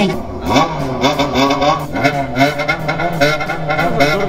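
A motorcycle engine revved up and down over and over in the rhythmic pattern of a bōsōzoku-style CBX 'call', its pitch rising and falling every fraction of a second.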